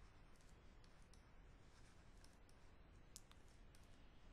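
Near silence with a few faint, light clicks and taps of a stylus writing on a pen tablet.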